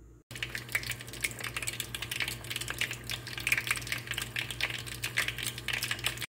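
Meatballs deep-frying in hot oil in a small pot: a dense, rapid crackling and popping that begins abruptly a moment in. A steady low hum runs underneath.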